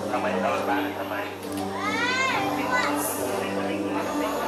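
Voices of a seated crowd of worshippers, with a child's high voice rising and then falling about two seconds in.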